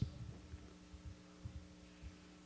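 Faint steady low hum with a few soft low thumps scattered through it.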